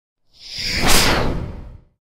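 A whoosh sound effect for a logo reveal: a single rushing swell that builds to a peak about a second in and fades away, with a low rumble underneath.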